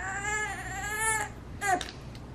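A six-month-old baby crying: one long wavering cry that fades out about a second in, then a brief second cry. He is protesting at a spoonful of chicken puree he doesn't like.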